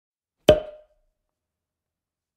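A single sharp, knock-like percussive hit about half a second in, with a brief ringing tone that dies away within half a second: an intro sound effect.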